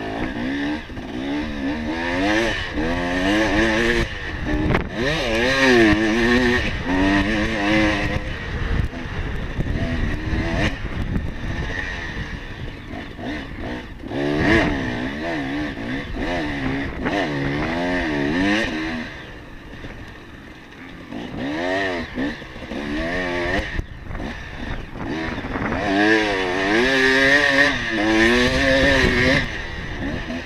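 Dirt bike engine heard from on board, revving up and down over and over as the throttle is opened and closed. It eases off briefly about twenty seconds in, then picks up again.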